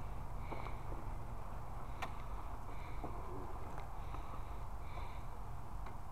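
Low, steady outdoor rumble with two sharp clicks, one at the start and one about two seconds in, and a few faint, short high chirps.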